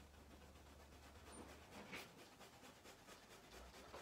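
Near silence: room tone with a low steady hum that drops away about a second and a half in, and a faint tick about two seconds in.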